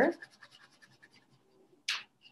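Wax crayon rubbed lightly back and forth on watercolour paper, a faint quick scratching of many small strokes. Near the end there is one short, sharper scratching hiss.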